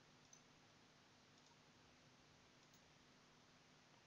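Near silence: a faint steady hiss with one faint tick about a third of a second in.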